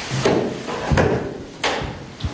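Three dull knocks, about two-thirds of a second apart.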